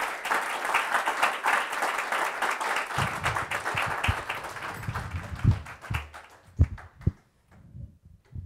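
Audience applauding, which thins out and dies away about six to seven seconds in. Dull low thumps sound under the clapping in its second half.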